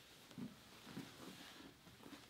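Near silence: room tone, with a couple of faint soft bumps from grapplers shifting their bodies on the training mat.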